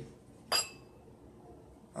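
A single clink of a drinking glass about half a second in, ringing briefly.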